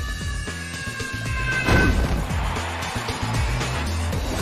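Animated-film score music over a steady low bass pulse with held high notes. About a second and a half in, a loud whoosh sound effect falls sharply in pitch.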